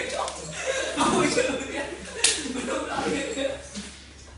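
A person's voice with a sharp click about two seconds in.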